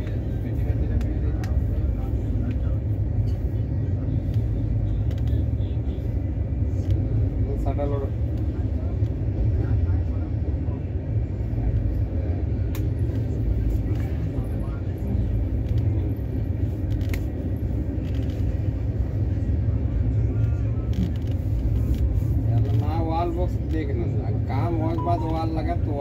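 Steady low rumble of a moving passenger train heard from inside the coach, with a few faint voices at times.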